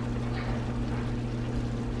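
Creamy garlic sauce with shrimp and linguine simmering in a cast-iron skillet on low heat: a soft, steady bubbling over a steady low hum.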